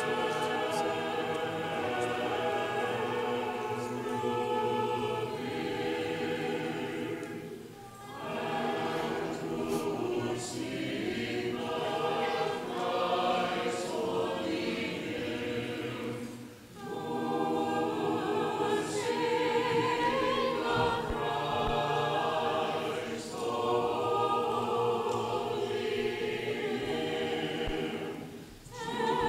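Church choir singing unaccompanied Orthodox liturgical chant in several voices, in long held phrases with short breaks between them.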